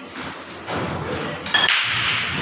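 Pool balls cracking together in a break shot, a sharp ringing click about one and a half seconds in, followed by a clatter of balls scattering.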